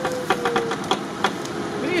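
Off-road SUV's engine running as it speeds up across rough ground for a run-up, a steady note that sags a little in pitch. A quick series of sharp clicks and knocks sounds over it in the first second and a bit.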